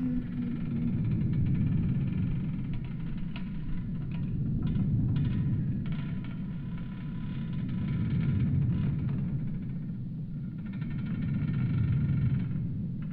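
Designed ambient drone for an alien forest: a dense low rumble that swells and fades every three to four seconds, with faint held high tones and scattered crackles above it. A falling tone dies away about a second in.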